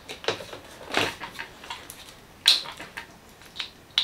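A few light clicks and knocks from handling the plastic chassis of a radio-controlled truck. The loudest knock comes about two and a half seconds in.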